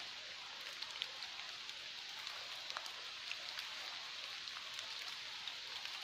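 Steady hiss of falling water in a wet forest, with scattered faint ticks.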